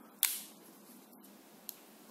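Xiaomi Mi Band 3 tracker capsule snapping into its silicone wristband: one sharp click about a quarter second in, then a faint tick near the end.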